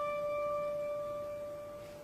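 A single steady held note with a clean, pure sound, sounded to give the choir its starting pitch before singing, fading away over the two seconds.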